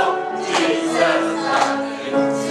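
A small group of adult men and women singing a Christian song together as a choir, with long held notes.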